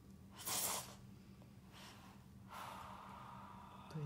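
A woman's sharp intake of breath, loud and brief about half a second in, followed by two softer breaths: her reaction to the sting of PDO thread needles going into the face.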